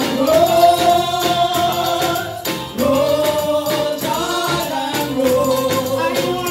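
A small gospel vocal group of four singing a hymn in harmony through microphones, held notes sliding between pitches, over a steady percussion beat.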